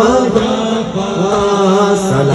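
Men chanting a noha, a Shia lament, led by a voice through a microphone and sung on long held notes that bend slowly in pitch.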